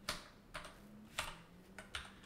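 Computer keyboard typing: about five separate keystrokes, the loudest just past the middle.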